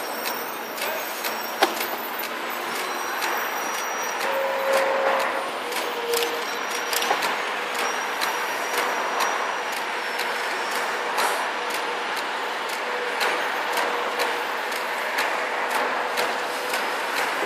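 Road traffic: buses, cars and trucks running along a busy multi-lane street, a steady noise with occasional sharp clicks and a few brief faint high squeals.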